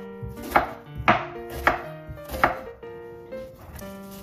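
Chef's knife chopping an onion on a wooden cutting board: four sharp knocks of the blade against the board, about half a second apart, stopping about two and a half seconds in.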